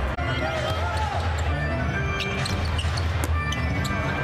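Basketball arena sound: music over the arena speakers with a low bass line, under crowd voices, and a few sharp bounces of a basketball on the hardwood.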